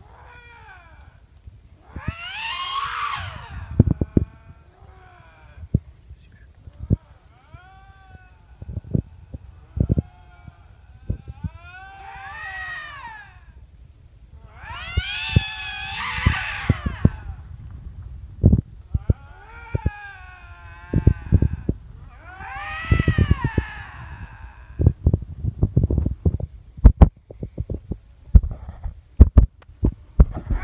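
Canada lynx screaming: a string of long, wavering yowls that rise and fall in pitch, one every few seconds. Sharp knocks and clicks come between the calls, and these are loudest in the second half.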